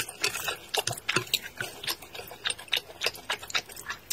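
Close-miked chewing of noodles in sauce: a steady run of quick, irregular clicks, several a second.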